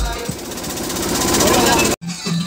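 Dance-remix build-up: the kick drum drops out, and a rising noise sweep with a rapid drum roll grows steadily louder, then cuts off suddenly near the end.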